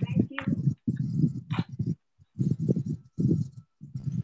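Indistinct talking in short phrases, with a few brief high squeaks.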